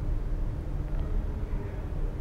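Steady low background hum, with no speech.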